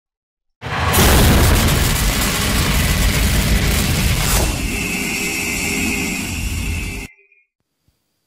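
Cinematic logo-intro sound effect: a loud boom with a long, heavy rumble, a downward swoosh about four seconds in, then a steady ringing tone over the rumble until everything cuts off suddenly about seven seconds in.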